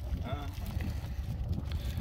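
Wind rumbling on the microphone, with a short voice sound about a quarter second in.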